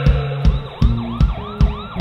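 Live indie rock band playing an instrumental passage: a fast, steady drum beat with bass notes under it, and a repeating swooping, siren-like tone over the top.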